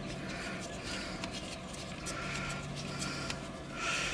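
Hard plastic pieces of a car phone mount being handled and fitted together: faint rubbing with a few small clicks.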